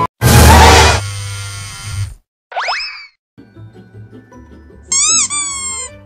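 Cartoon sound effects over music: a loud crash-like burst right at the start with a ringing tail, then a quick rising glide about two and a half seconds in, then quiet music with a high wavering pitched sound near the end.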